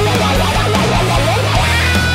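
Hard rock instrumental section: a fast electric guitar lead run over bass and drums, settling on a held high note near the end.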